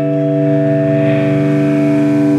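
Rock band's electric guitars and bass holding one sustained, ringing chord, several notes steady and unchanging, with no drums.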